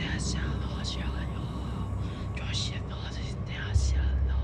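A whispered, unintelligible voice: a string of breathy, hissing syllables with no clear words, over a steady low hum.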